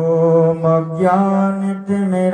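A man chanting a Sanskrit devotional invocation in long, held melodic notes.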